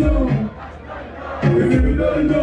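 Live concert sound: a voice shouting over amplified music with a heavy bass beat, and a large crowd cheering. It is loud at the start, drops for about a second, then comes back loud.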